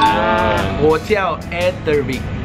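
A long, wavering, bleat-like voice sound, followed by brief speech, over background music.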